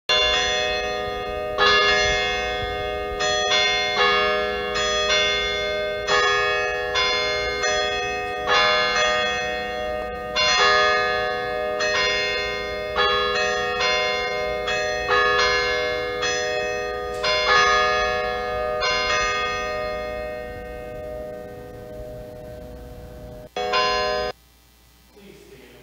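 Church bells ringing a peal: a steady run of overlapping strikes on bells of different pitches, about two a second, each ringing on. The peal dies away in the last few seconds.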